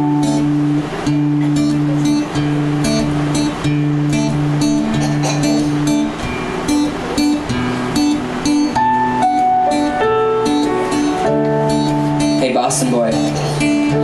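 Acoustic guitar strumming in a steady rhythm over sustained electric keyboard chords: the instrumental intro of a live acoustic pop mashup, played before the vocals come in.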